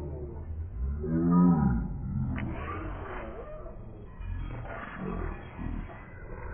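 A voice clip made strange by audio effects, sounding like a deep animal-like roar rather than words. Its pitch swells up and falls back in an arch about a second in, the loudest moment, with weaker warbling parts later over a steady low hum.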